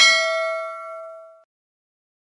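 Notification-bell sound effect: a single bright bell ding that rings out on several pitches and fades away about a second and a half in.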